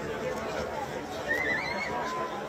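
Voices of people talking around a sports ground, with one brief, high, wavering call about a second and a half in.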